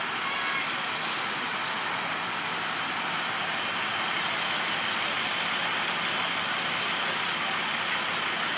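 School buses driving past close by: a steady drone of engine and road noise.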